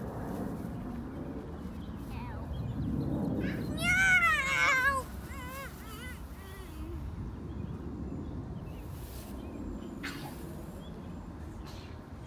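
A young child's high, wavering squeal, about four seconds in and lasting about a second, followed by a few fainter short squeaks, over a steady low background rumble.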